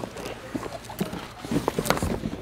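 A large cardboard box being pushed back onto a stack of cardboard boxes: a handful of short, irregular knocks and scuffs of cardboard against cardboard.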